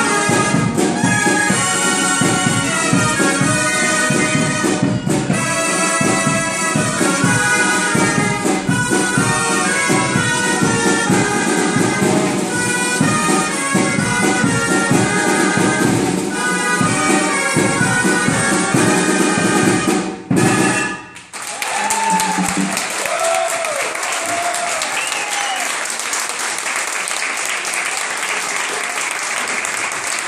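Gralles, Catalan double-reed shawms, playing a loud tune together over a steady drum beat. The tune stops abruptly about twenty seconds in, and applause and cheering follow, with a few whoops.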